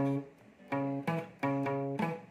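Acoustic guitar playing a slow single-note bass riff on the low E string, around the 9th and 12th frets: a few separate plucked notes, each ringing briefly before the next.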